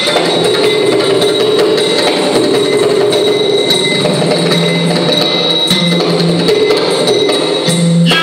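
Yakshagana maddale, a two-headed barrel drum, played in quick, dense strokes as an instrumental passage for dance, with a ringing metallic tone keeping time over it.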